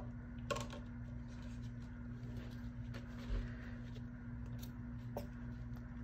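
Quiet room tone: a steady low hum with a few faint clicks and taps.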